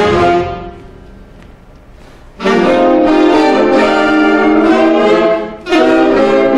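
Saxophone ensemble of baritone, tenor and alto saxophones playing long held chords: a chord dies away in the first second, there is a quiet gap of about a second and a half, then a loud sustained chord, a brief break, and another chord starts near the end.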